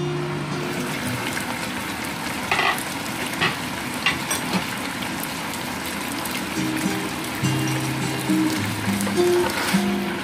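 Pork ribs sizzling and bubbling in their cooking liquid in a pan, a steady hiss with a few sharp pops, under background music.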